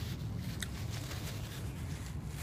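Low steady background rumble with a few faint clicks and rustles: a man chewing and handling a paper napkin.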